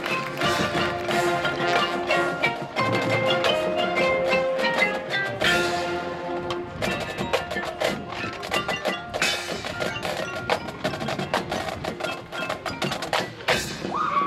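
A marching band plays a percussion-led passage: the front ensemble's mallet and struck percussion sounds many sharp strikes over held pitched chords.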